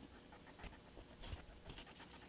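Near silence, with a few faint, soft rustles from a glue brush stroking cardstock and the pieces being handled.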